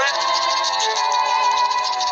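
A cartoon character's long, held wailing cry over background music.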